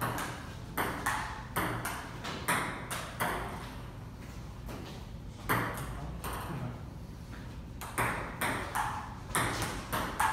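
Table tennis ball knocking back and forth between the paddles and the tabletop during rallies: a quick run of sharp knocks for about the first three seconds, a pause, a couple of knocks, then another rally starting near the end.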